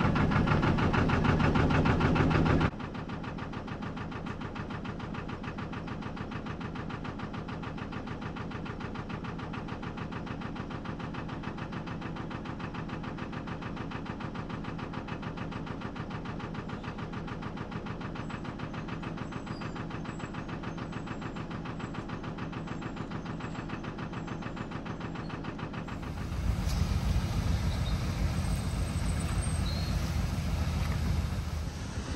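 Narrowboat's diesel engine idling with a steady, even beat. It drops suddenly in level a few seconds in, and a louder low rumble of wind on the microphone joins near the end.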